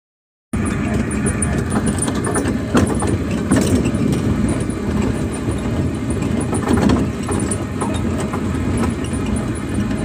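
Car engine and road noise running steadily, with a few sharp knocks and clicks over it.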